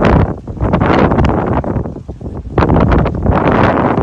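Wind buffeting a phone's microphone in loud, irregular gusts.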